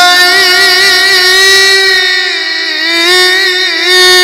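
A male Egyptian reciter chants religious text in the ornamented mujawwad style into a microphone, without a break. He holds long notes; around the middle the line dips and wavers in melismatic turns, then steadies again.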